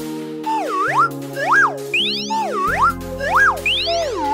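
Children's cartoon music with held notes, under a run of cartoon 'boing' sound effects: swooping tones that dip down and rise back up, about one a second. A deep bass note joins the music about two and a half seconds in.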